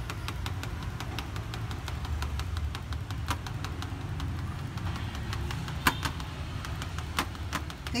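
Lá lốt-wrapped beef rolls grilling over a charcoal clay stove: frequent small crackles and pops from the coals and the leaves, with one sharper pop about six seconds in, over a steady low rumble.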